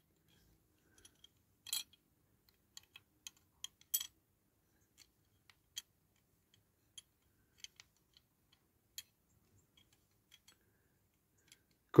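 Faint, irregular clicks and taps of small toy-car parts being handled and fitted by hand, about a dozen spread out, the loudest about four seconds in.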